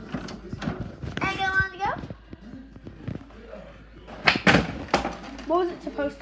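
A loud sharp knock about four and a half seconds in, among small handling clicks, with a child's short wordless vocal sounds about a second in and again near the end.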